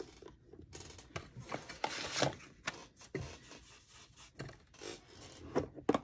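Paper and craft supplies being handled and moved about on a cutting mat: a run of brief rustles and scrapes with a few light clicks.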